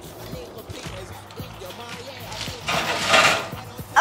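Background music, with a short scraping noise about three seconds in from a baking tray being handled at the oven.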